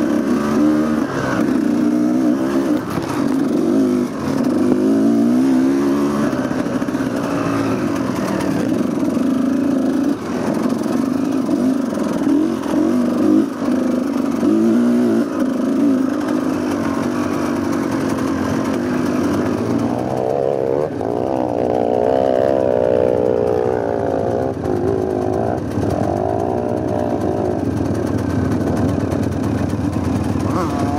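Off-road dirt bike engine running close up under constant throttle changes on a rough trail, the revs rising and falling unevenly; from about two-thirds of the way through it runs at higher revs.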